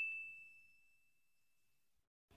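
The fading tail of a single bright bell-like ding, an editing sound effect, ringing out and dying away to near silence within the first moments.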